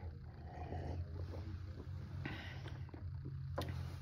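A man sipping and swallowing beer from a pint glass, faint over a steady low hum. There is a short breathy exhale a little past halfway, and a single soft knock near the end as the glass is set down on the table.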